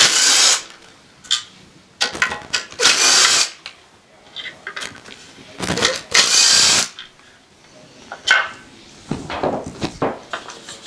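Cordless drill running in three short bursts of about a second each, backing out the screws that hold the fan cover on the pump's electric motor. Small clicks and knocks of the screws and cover come between the bursts.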